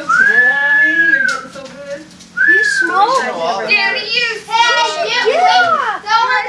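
A group of adults and children laughing and squealing loudly over one another, starting with a long, high-pitched squeal that rises and then holds for about a second.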